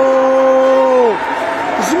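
A man's voice holding one long, drawn-out exclamation at a steady pitch, fading out a little over a second in. Quieter hall noise follows.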